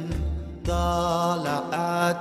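Devotional song praising Allah: a voice holds long, wavering sung notes over low bass pulses. The music dips briefly about half a second in, then the singing resumes.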